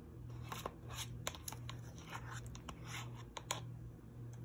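Metal spoon scooping cottage cheese out of a plastic tub: a run of scrapes and clicks of spoon against plastic, with two sharper clicks about a second in and near the end. A low hum runs underneath.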